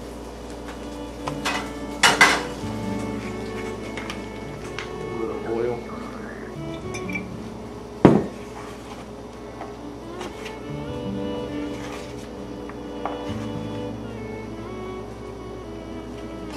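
Clinks and knocks of a metal roasting pan being handled as a seared beef tenderloin is set in it, the loudest single knock about eight seconds in, over steady background music.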